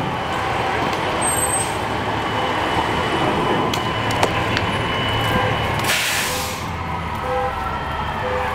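Fire apparatus diesel engine running steadily, with a short burst of hissing air about six seconds in.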